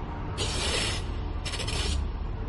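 Two short rasping hisses, the first about half a second long and the second just before the end, over a steady low rumble of film sound design.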